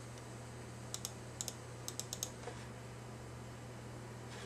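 A quick run of light clicks from computer keys, about nine in a second and a half, some in close pairs, over a steady low hum.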